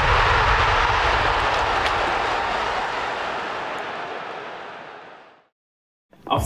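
Intro sound effect under the logo: a long, noisy whoosh like a jet passing, loudest at the start and fading steadily until it dies away about five seconds in.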